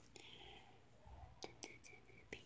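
Near silence: a faint breathy whisper in the first half second, then a few faint clicks about a second and a half in.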